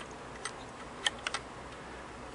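Four small, sharp metal clicks from fingers working the loosened feed dog of a Singer 403A sewing machine, which will not yet lift free because a screw is not backed out far enough.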